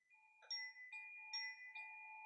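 Soft bamboo-tube chime being rung: its clapper strikes the tuned rods inside about three times, and the clear, bell-like tones ring on and overlap.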